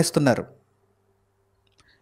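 A man's voice preaching in Telugu into a microphone, breaking off about half a second in, followed by near silence.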